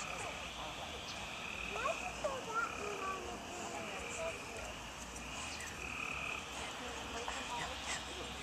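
Night chorus of calling animals: a high trill that swells in repeated bursts about a second long.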